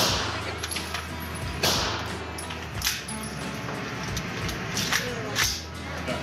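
Gunshots echoing in an indoor shooting range: one at the start, another just under two seconds in, and two more half a second apart near the end.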